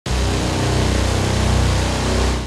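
Heavy diesel engine of an articulated dump truck running loudly and steadily with a deep, pulsing rumble, cutting in abruptly at the very start.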